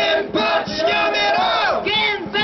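Shouted protest chanting through a microphone and PA, a leader's voice calling out short slogans with a crowd joining in.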